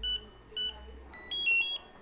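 Intelbras IFR7000+ smart lock giving electronic beeps: two short high beeps, then a quick rising chime of several notes about a second and a half in. These confirm that the new PIN code has been registered.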